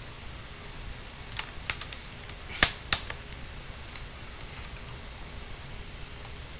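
Plastic clicks as a credit card is pried under the edge of a netbook keyboard to free its retaining clips: a few light clicks, then two sharp snaps about a third of a second apart around halfway through.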